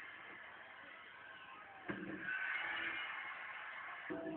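A casket lid slammed shut about two seconds in, a single sharp bang, over a steady arena crowd that grows louder and cheers just after it.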